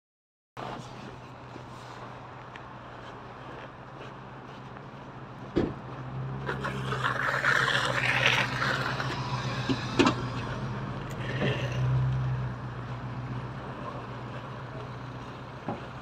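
A motor vehicle running close by on a city street, a steady engine hum that grows louder between about six and thirteen seconds in, with two sharp knocks.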